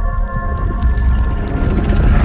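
Cinematic trailer score: long sustained eerie tones over a deep low drone, with a crackling sound effect entering just after the start.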